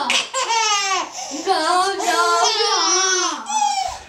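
A young child's high-pitched playful vocalizing and laughter, with a baby laughing; the voices slide up and down in pitch almost without a break.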